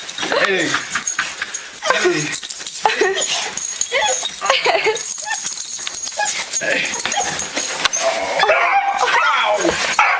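A dog whining and yipping in a run of short high calls, the excited noises of a dog greeting its owner home after a long absence, with a man's voice talking to it.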